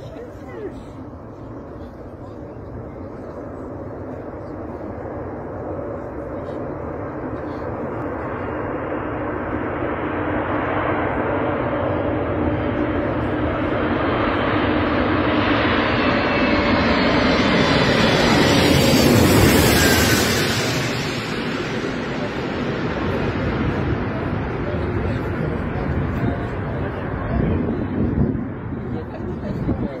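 Antonov An-225 Mriya's six turbofan engines growing steadily louder as the giant jet approaches low through the fog. The sound peaks about two-thirds in as it passes, with the engine whine dropping in pitch as it goes by, then runs on steadily at a lower level.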